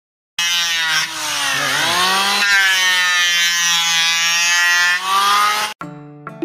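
Stanley electric hand planer running at full speed, a loud motor-and-cutter whine with hiss, its pitch dipping briefly and recovering about one and a half seconds in. This is the planer whose blade tip rubs against its body, the fault being repaired. The sound cuts off abruptly near the end.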